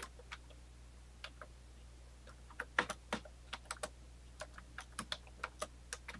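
Typing on a computer keyboard: separate keystroke clicks, sparse at first with a short pause, then a quicker run of keystrokes through the second half, over a steady low hum.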